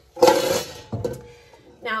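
Raw beef bones clattering against a stainless steel mixing bowl as they are grabbed by hand. A loud metallic clatter comes about a quarter second in, and a second knock comes about a second in.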